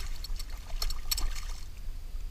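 Hooked redfish (red drum) thrashing at the surface of shallow water beside a kayak as it is landed, with a few sharp splashes in the first second and a half.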